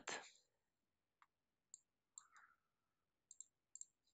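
Near silence with a few faint computer mouse clicks, several of them close together near the end.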